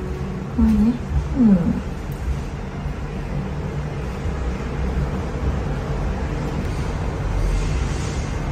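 A baby monkey makes two short calls in the first two seconds, the second sliding in pitch, over a steady low background hum.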